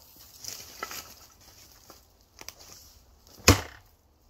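A single sledgehammer strike, steel on steel, on the top of a threaded screw-type log-splitting wedge, driving its tip into a log, about three and a half seconds in, with a brief ring after it. A few faint knocks come before it.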